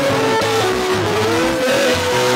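Live church band playing worship music: a sliding melody line over steady bass notes, with electric guitar in the mix.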